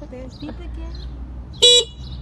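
Eleksa E-Rider electric scooter's horn giving one short beep near the end.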